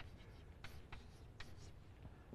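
Chalk writing on a blackboard: a few faint, short scratching strokes as a word is written.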